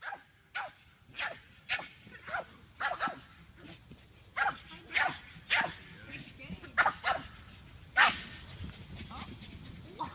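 A pug barking over and over in short, sharp barks, roughly two a second with brief pauses, the loudest bark about eight seconds in.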